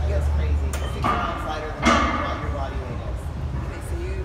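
Indistinct voices over a steady low rumble, with one sharp knock or clank a little before the middle.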